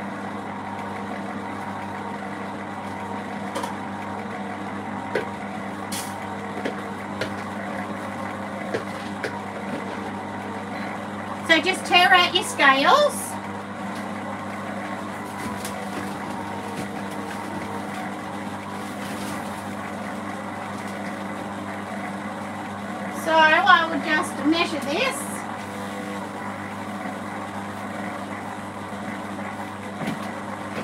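Electric stand mixer running steadily on low speed, its motor humming as the flat beater turns a bowl of dry bath bomb mix. Short bursts of a voice come in twice, about twelve and twenty-four seconds in.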